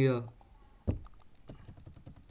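Computer keyboard being typed on: a single sharp click about a second in, then a quick run of keystrokes.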